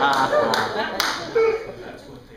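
Audience laughing and applauding, dying away, with a few last separate claps near the middle.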